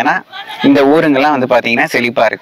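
A man speaking, with a brief pause about a quarter second in.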